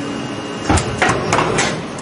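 CNC lathe crash: steady machine running noise, then four hard metallic bangs in quick succession starting under a second in, the first two the loudest, as metal parts strike inside the machine.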